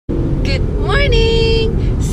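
A woman's voice calls out and ends in one long held note, over the steady low rumble of a car's cabin.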